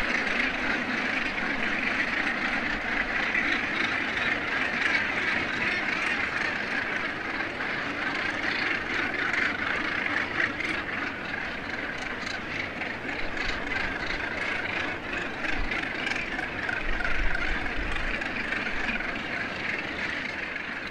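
Many northern gannets calling at once from a crowded breeding colony: a dense, steady chorus with no break.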